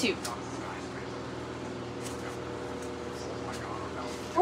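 Steady low room hum with a few faint light clicks of things being handled as someone rummages in a bag.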